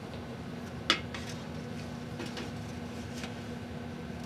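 A metal tray handled against a microscope stage: one sharp clink about a second in, then a few faint knocks, over a steady low hum.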